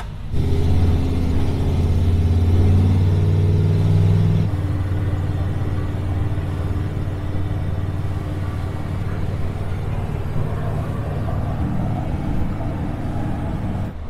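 A 1976 Ford F-150's swapped-in Coyote 5.0 V8, heard from inside the cab. It pulls loud for about the first four seconds, then settles to a steady cruise at about 55 mph and 2,000 rpm, with road noise.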